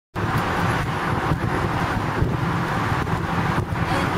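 A steady low motor-vehicle rumble, slightly uneven.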